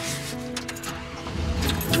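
Soft background music with held notes, joined about one and a half seconds in by a car's engine rumbling as the car drives off, growing louder.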